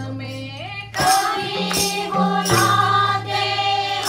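A group of women singing together into microphones, with hand claps keeping a steady beat.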